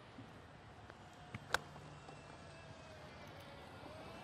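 Golf club striking a ball off the turf: one sharp crack about a second and a half in, just after a fainter tick.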